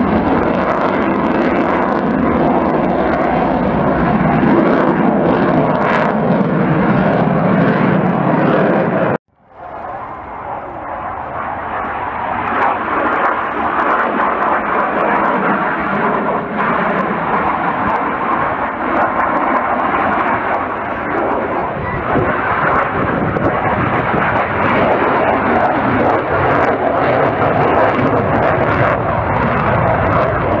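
Jet noise from an F/A-18 Hornet's twin General Electric F404 engines as it flies a display: a loud, steady rush. About nine seconds in, it cuts out abruptly to near silence and swells back up over the next couple of seconds.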